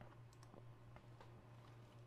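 Near silence with a few faint computer mouse clicks over a low steady hum.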